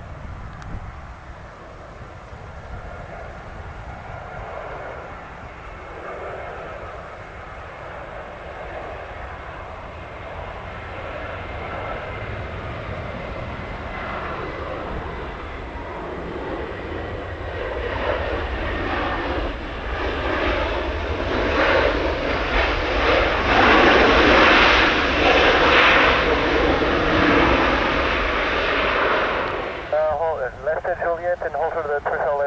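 An Airbus A320's jet engines as it comes in to land. The sound grows steadily louder, is loudest as the airliner rolls past on the runway after touchdown, and cuts off suddenly at the end.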